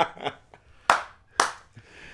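Two sharp hand claps about half a second apart, about a second into a man's laughter.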